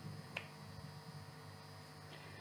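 Quiet room tone with one short, faint click about a third of a second in.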